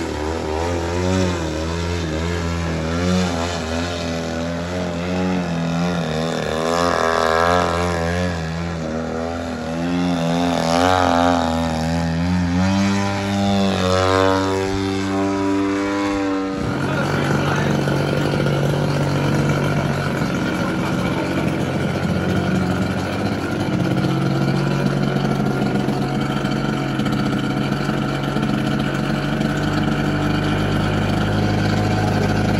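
Engine of a radio-controlled aerobatic model airplane in flight, its pitch rising and falling repeatedly as it throttles through manoeuvres, with several rising glides after about twelve seconds. At about seventeen seconds the sound changes suddenly to a steadier, lower engine drone.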